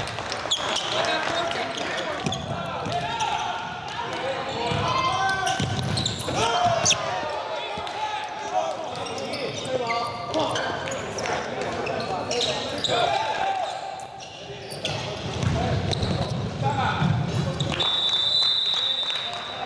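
Live basketball game audio in an echoing gym: a basketball bouncing on the hardwood court amid players and spectators calling out.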